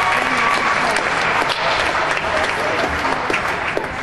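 Audience applauding at the end of a gymnastics floor routine: dense clapping that eases off slightly near the end.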